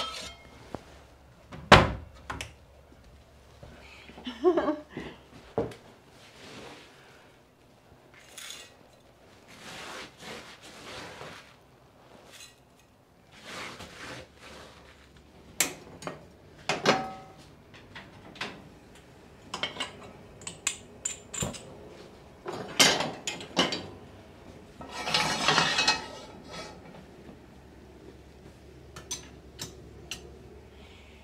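Kitchen handling sounds: a sharp wooden knock about two seconds in, then scattered clinks and clatter of a metal frying pan and utensils being moved about on a gas stove, with a longer noisy stretch about two-thirds of the way through.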